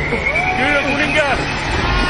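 Animated film action soundtrack: many overlapping shouting voices over a steady high whistle and a low rumble.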